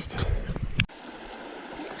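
Small creek flowing steadily. In the first second a low rumble and a sharp knock sit over it, and they cut off suddenly.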